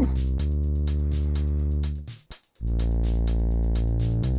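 Synthesizer bass line holding sustained low notes that change every couple of seconds, with the kick drum muted, over a fast, even high ticking from the sequenced pattern. The sound cuts out briefly a little past halfway, then the next note comes in.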